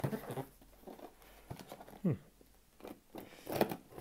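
A blunt knife scraping and sawing at plastic packing tape on a cardboard box, with scattered small scratches and taps and a louder scrape near the end; the blade is failing to cut through the tape.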